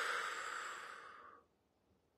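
A woman's long sigh, a breathy exhale through pursed lips that fades away about a second and a half in.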